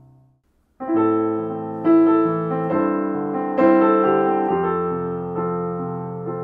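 Yamaha Clavinova digital piano: the faint tail of a held chord dies away, and after a brief gap a passage of sustained chords begins just under a second in, the notes changing about once a second.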